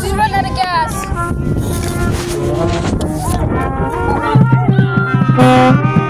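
Brass instruments of a marching band playing loose, separate notes rather than a tune. From about four seconds in a low brass note holds steady, with higher held horn notes above it.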